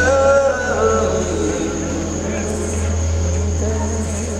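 Live band music with a steady, sustained low bass drone underneath. A male singer's held line ends about a second in, leaving the band playing more quietly.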